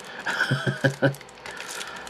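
A man's brief laugh: a quick run of four or five short chuckles in the first second.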